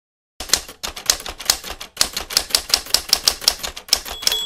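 Typewriter keys clacking in a quick, slightly uneven typing rhythm of about five or six strikes a second, starting about half a second in. It is a typewriter sound effect matched to title text typing itself onto the screen.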